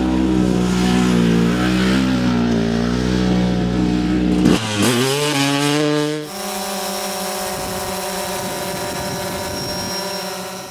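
Off-road vehicle engines revving. First comes a loud engine note that rises and falls for about four and a half seconds. About five seconds in the revs climb sharply. From about six seconds in it settles into a quieter, steady drone.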